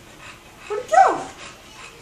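A bulldog gives one short whining bark about a second in, its pitch jumping up and then sliding down.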